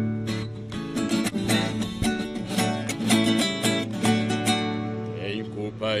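Viola caipira and acoustic guitar playing the instrumental intro of a sertanejo song together, with picked and strummed notes over steady bass notes. A singing voice comes in at the very end.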